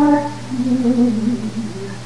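A male cantorial singing voice holding a loud sung note that ends just after the start, followed by a softer, lower wandering vocal line, over a steady low hum.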